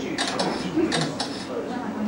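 Several short mechanical clicks and rattles in small clusters, over faint talk in the room.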